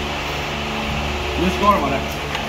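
Steady mechanical hum, even and unchanging, with a short burst of voice about one and a half seconds in.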